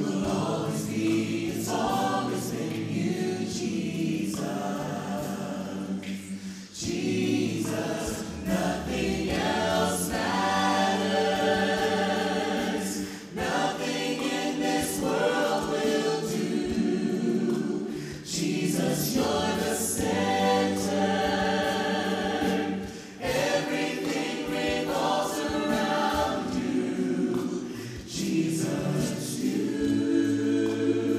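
A cappella vocal ensemble of men and women singing a worship song in close harmony into microphones, in sung phrases with brief breaths between them.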